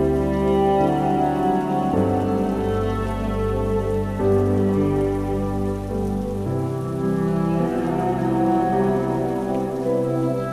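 Slow, soft cello and piano music over a sustained synth pad, with the chords changing every couple of seconds, laid over a steady recorded rain.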